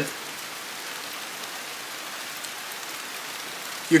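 Steady rain falling: an even hiss that holds at one level, with no distinct drops or other events standing out.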